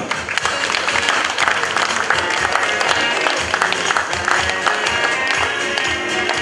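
Audience applauding warmly, dense rapid clapping, over background music.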